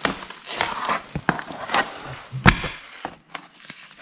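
Removed four-cylinder engine head being handled and set down on a sheet of cardboard: cardboard rustling and scraping with several sharp knocks, the loudest about halfway through.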